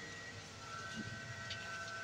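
Quiet, steady background hum with a faint high-pitched whine held on one pitch.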